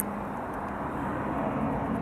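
Steady outdoor road-vehicle noise: a low, even engine hum under a wash of traffic sound, with one brief click at the very start.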